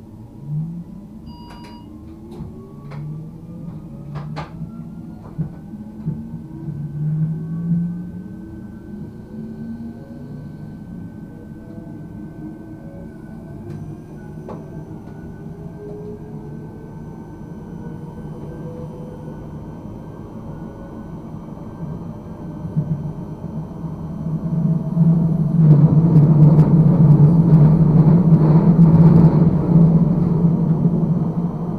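Škoda RegioPanter electric multiple unit pulling away from a stop, heard from the driver's cab. Several whining tones from the traction drive climb steadily in pitch as the train gathers speed, with a few sharp clicks early on. In the last few seconds the running rumble grows much louder.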